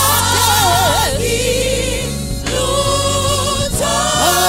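Gospel worship team singing a Zulu worship song together in harmony, with a lead voice sliding and wavering above the group.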